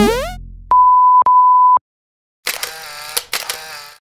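Outro sound effects: a quick rising swoosh-like glide, then a steady high beep like a censor bleep, sounded twice back to back for about half a second each, followed after a short silence by a buzzy, pitched effect with a few clicks.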